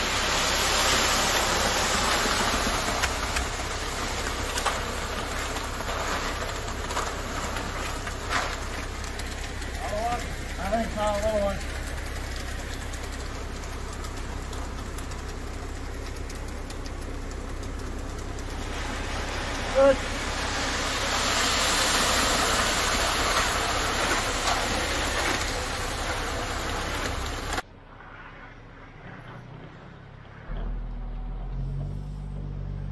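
Concrete conveyor truck running steadily under load, with a constant low engine hum and wet concrete pouring from the conveyor's discharge tube onto the slab. A brief wavering tone comes about ten seconds in and a short sharp sound near twenty seconds. The sound drops off abruptly near the end.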